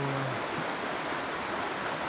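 Steady, even rushing background noise outdoors in forest, with no distinct events, after the last syllable of a man's word fades in the first moment.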